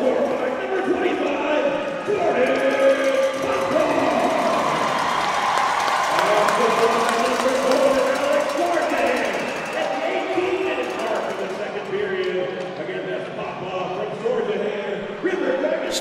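Echoing voices in a large ice-hockey arena: crowd chatter and a public-address voice carrying through the hall during the lull after a goal.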